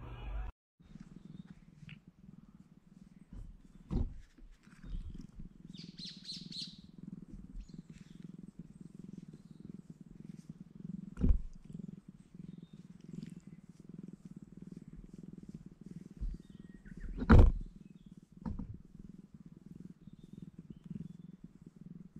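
A domestic cat purring steadily, close to the microphone, as it is stroked on the head. A few sharp knocks break in, the loudest about 17 seconds in.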